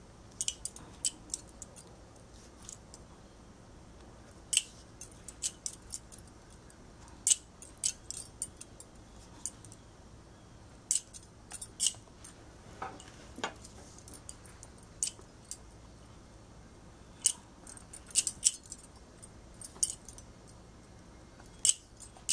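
Stacked bangles on the wrists clinking in dozens of short, irregular jingles as the hands pick up and set small beads.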